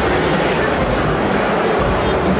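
Steady, dense crowd hubbub of many people talking at once, filling a large packed hall.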